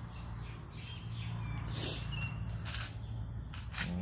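Outdoor ambience with a few short bird chirps over a steady low hum.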